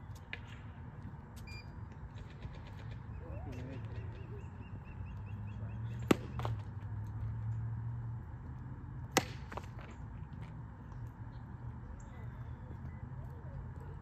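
Two sharp pops of a tennis ball being struck, about three seconds apart, over a steady low rumble.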